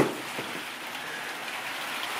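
Steady hiss of heavy rain falling on a corrugated roof, with one sharp click at the very start.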